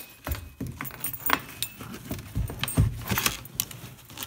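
Shoes being handled and put away on closet shelves: a busy run of small clicks, clinks and rattles, with a couple of heavier bumps about two and a half to three seconds in.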